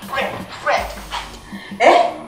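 A woman's wordless groans of pain, four short cries that bend up and down in pitch, the last and loudest near the end. A soft steady music beat runs underneath.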